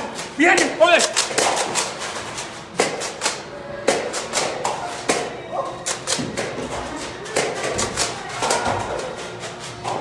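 Nerf blasters firing during play: a steady stream of irregular sharp snaps and clicks, several a second. Voices shout near the start.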